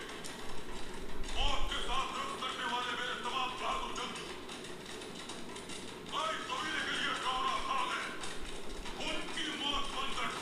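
Dubbed TV-drama soundtrack: a man's voice speaking over background music, the talk pausing for a couple of seconds mid-way.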